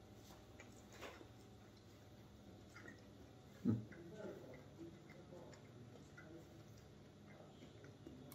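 Faint chewing of small pieces of raw sirloin steak, with a few soft, scattered clicks.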